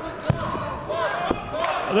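Two sharp thuds on a wrestling ring about a second apart, amid shouting crowd voices.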